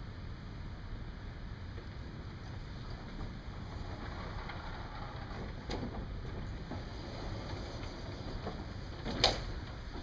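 Vertically sliding chalkboard panels being moved in their frame: a low rumbling run, a small knock about halfway through, and a sharp knock near the end, the loudest sound, as a panel comes to a stop.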